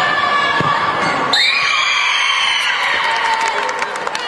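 A group of girls shrieking and cheering in celebration of a goal, with long high-pitched screams breaking out about a second and a half in.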